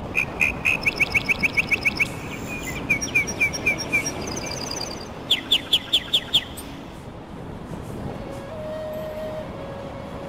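A songbird singing in runs of sharp, evenly repeated chirps, about six a second, over a steady background hiss. About five seconds in comes a quick run of down-slurred notes.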